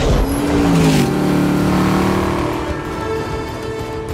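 Film soundtrack of a car engine revving up in the first second and then holding a steady high rev, with music underneath.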